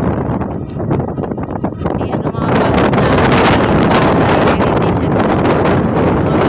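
Heavy wind buffeting the microphone as it moves, a rough, fluttering rush that gets louder about two and a half seconds in.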